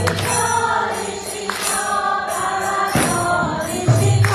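Devotional group chanting, several voices singing a mantra together, with small hand cymbals (kartals) struck about every second or so.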